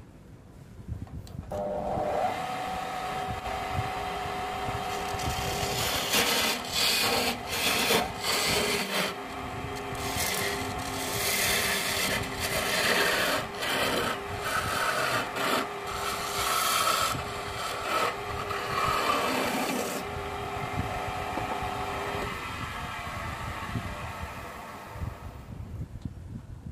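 Wood lathe motor starting up and running with a steady hum while a hand-held turning chisel cuts into the spinning mahogany workpiece, making rough scraping, rasping cuts that come and go from about six seconds in to about twenty seconds. The lathe then runs on without cutting and spins down near the end.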